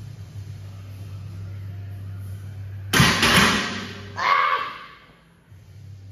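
Loaded barbell racked onto a steel power rack at the end of a bench-press set: a sudden loud clank with rattle about three seconds in, followed by a second loud burst about a second later. A steady low hum runs underneath and stops about four seconds in.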